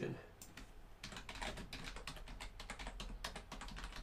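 Computer keyboard typing: a fast run of key clicks, densest from about a second in, as a name is typed.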